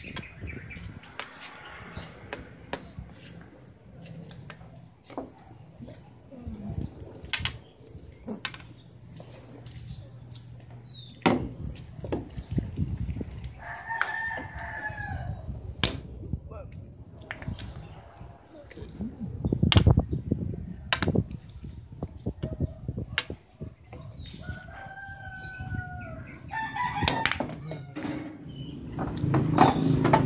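A rooster crowing twice, each crow about two seconds long, the second coming some twelve seconds after the first. Scattered sharp clicks and knocks come in between, the loudest just before the midpoint.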